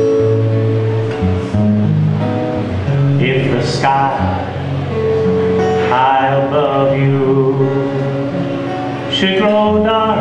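Live acoustic guitar playing a soft-rock accompaniment, with a man's voice singing short phrases over it three times.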